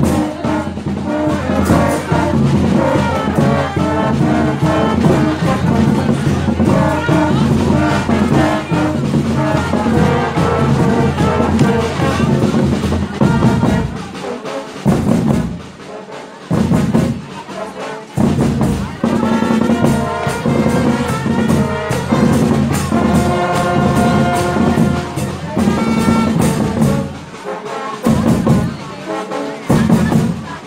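School marching band playing loud brass music with a driving beat, with a couple of short breaks in the middle and near the end.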